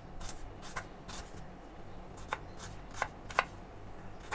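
A kitchen knife chopping shallots on a wooden cutting board: a series of irregular sharp taps as the blade meets the board, the loudest near the end.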